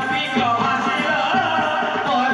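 Live Odia danda nacha folk music: a sung melody over steady drumming.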